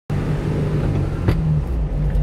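Small truck's engine and road noise heard from inside the cab, a steady low drone. A single sharp click comes just past a second in.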